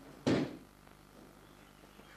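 A single heavy thump about a quarter of a second in, dying away within half a second: a body landing on the training mat.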